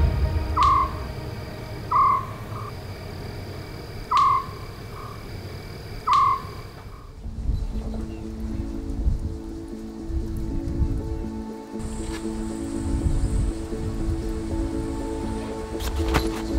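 Four short animal calls about two seconds apart, each with a faint echoing second note, over a steady high insect trill in night-time bush ambience. About seven seconds in, background music with held notes takes over.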